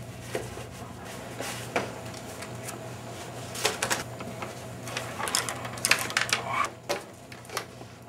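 Handling noises at a table: short knocks and clatter from a wooden chair being moved and papers being picked up and rustled, thickest about five to seven seconds in, over a steady low hum.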